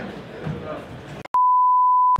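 Murmur of voices in a boxing gym for about the first second, then the sound cuts out. A loud, steady test-pattern reference tone follows: the 1 kHz tone that goes with colour bars, one unbroken beep.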